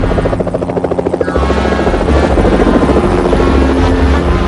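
Cartoon mechanical sound effect: a fast, helicopter-like fluttering chop for about the first second and a half, giving way to a steady low rumble, with music underneath.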